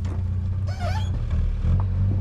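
A vehicle engine idling with a steady low hum; its note shifts about one and a half seconds in. A short high call sounds briefly just before the shift.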